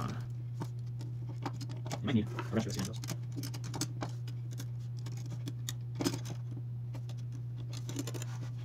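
Scattered light clicks and scratches of a small screwdriver and metal construction parts being handled as small screws are tightened down, the sharpest click about six seconds in. A steady low hum runs underneath.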